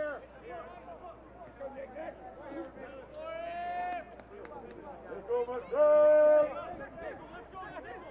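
Soccer players shouting to each other on the field during a stoppage, with faint chatter in the background. There are two long called-out shouts, one about three seconds in and a louder one around six seconds in.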